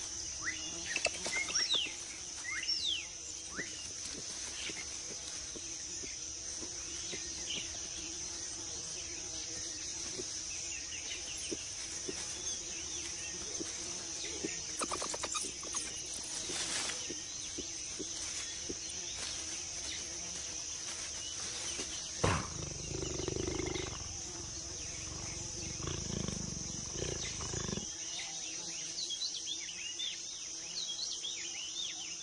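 Tropical forest ambience: a steady high-pitched insect chorus with a few quick bird chirps in the first few seconds. About 22 seconds in, a low growl starts and runs for about six seconds.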